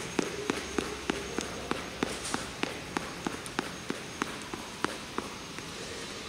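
Quick footfalls on a rubber gym floor from high-knee skipping in place, about three light foot strikes a second, stopping near the end.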